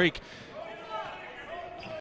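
A basketball dribbling on a hardwood court, faint, with light court noise in an otherwise empty gym.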